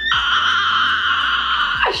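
A woman's high-pitched scream of excitement, held for nearly two seconds and cutting off near the end.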